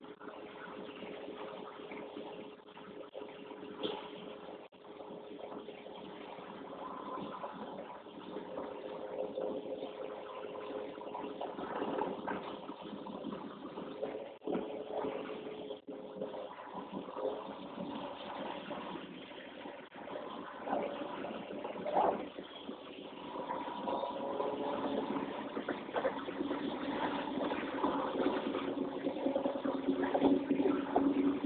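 Engine noise heard from inside a truck cab rolling slowly, a steady running sound with pitched tones that drift slightly up and down, and a few short knocks.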